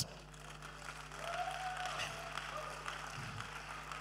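Congregation applauding lightly, building about a second in.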